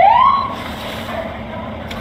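Police car siren giving a short electronic whoop: one rising-and-falling sweep that stops about half a second in, leaving a quieter steady hum.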